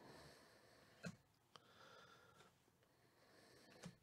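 Near silence: faint soft clicks and rustle of trading cards being slid through a hand-held stack, with a couple of small clicks about a second in.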